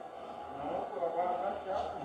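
Faint speech in the background, quieter than the nearby narration, with a low room hum beneath it.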